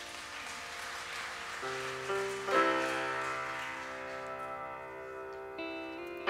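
Worship band playing a quiet instrumental interlude of sustained chords, with new chords coming in about one and a half and two and a half seconds in.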